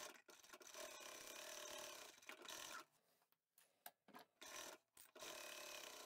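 Near silence, with faint rubbing of fabric being handled and slid across the sewing machine bed.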